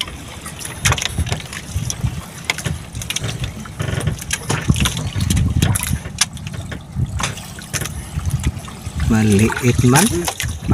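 Sea water lapping and splashing against the hull of a small outrigger boat, with wind rumbling on the microphone and scattered knocks and clicks from the boat and the fishing line being handled.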